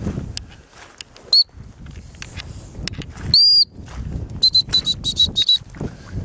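High-pitched whistle blasts, all at one pitch: a short blast a little over a second in, a longer blast about three seconds in, then a quick run of short pips near the end. Footsteps swish through rough grass and heather underneath.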